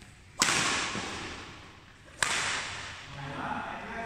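Badminton rackets striking a shuttlecock twice, about two seconds apart, each sharp crack followed by a long echo in the hall.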